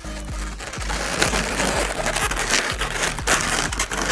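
Inflated latex modelling balloons handled and rubbed against each other as one is tied off and the fish's pieces are pressed together: a dense run of rubbing and scraping with scattered sharper snaps.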